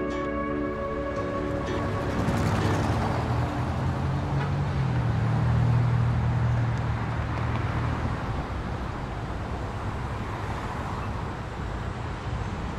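Background music fading out in the first two seconds, then outdoor street ambience: a motor vehicle's low engine hum swells and dies away as it passes, loudest around six seconds in.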